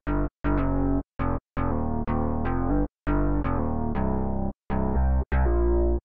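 A band mix of drums, bass and keys playing back, with the bass below about 100 Hz summed to mono. The music cuts out abruptly to silence several times and starts again.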